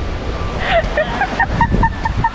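Wind buffeting the microphone over gentle surf washing in at the water's edge. In the second half there is a quick run of short, high voice sounds.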